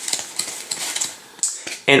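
A deck of Theory11 Provision playing cards being spread and thumbed through in the hands: irregular light card clicks and a soft paper rustle.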